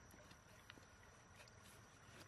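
Near silence, with a few faint clicks of a kitchen knife blade against the shell of a large freshwater mussel as it is pried open.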